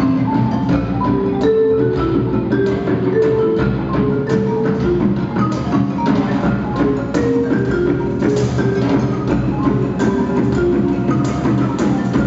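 Live percussion ensemble music: a marimba playing a melody of short notes over hand drums and a drum kit, with clicky wood-block-like strokes.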